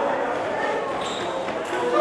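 Indistinct voices of the ringside crowd, talking and calling out.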